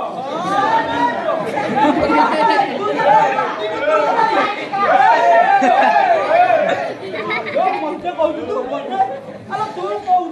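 Two performers' raised, high-pitched voices talking over each other in a loud quarrel.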